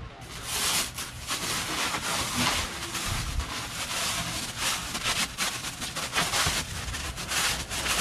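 Plastic cling wrap being pulled off the roll and wound fast and tightly around a person's legs: a continuous, rapid crinkling rustle of stretching film.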